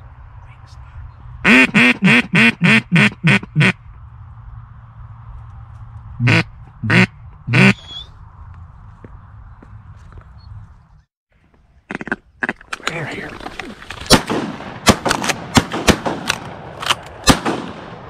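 Mallard duck call blown close by: a run of about eight loud quacks, then three more a few seconds later. After a short break, a rapid string of shotgun shots, several close together, with scuffling through the reeds between them.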